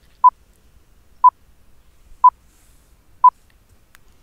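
Countdown timer beeps: four short beeps at the same high pitch, one each second, counting down the seconds.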